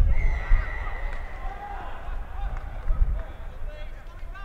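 Referee's whistle: one long, steady blast at the start, lasting nearly two seconds, stopping play, with players shouting under and after it.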